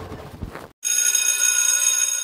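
Electric school bell ringing, a steady high-pitched ring that starts suddenly a little under a second in, marking lunch break.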